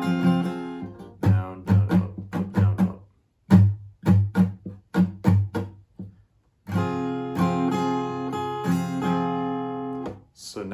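Steel-string acoustic guitar with a capo, strummed on a D minor chord in a down, down, up, up, down, up pattern. Through the middle the strums are short and cut off, with brief gaps. From about two-thirds of the way in the chord rings on between strums.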